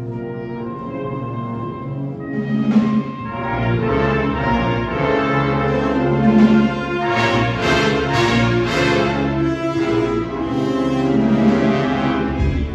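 A live school ensemble with prominent brass, backed by low drums, playing sustained chords. The music swells louder from about four seconds in.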